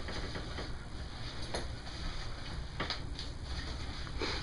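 Hands squeezing a raw apple wrapped in a rag, giving a few short faint cracks over a low steady background.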